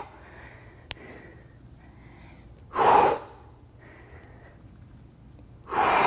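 A man's forceful exhales through the mouth, twice about three seconds apart, each on the push-up phase of a knee push-up, with quiet breathing in between. One small click about a second in.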